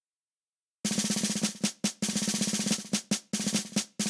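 Snare drum playing short rolls, each followed by a couple of single strokes, three times over, starting about a second in after silence: the drum opening of a piece of music.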